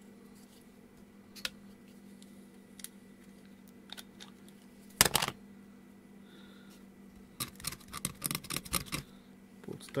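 Scattered small clicks and taps of parts being handled on a solderless breadboard, with one louder click about five seconds in and a quick run of clicks near the end, over a faint steady hum.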